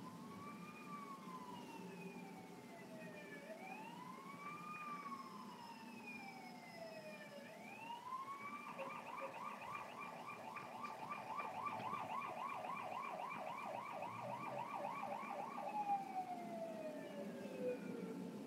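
A faint siren: slow rising and falling wails, switching about halfway through to a fast, even warble, and going back to a long falling wail near the end.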